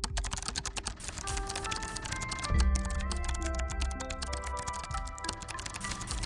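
Rapid computer-keyboard typing sound effect, a dense run of clicks starting suddenly, laid over light background music whose bass line comes in about two and a half seconds in.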